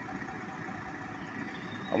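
A semi-truck's diesel engine idling steadily.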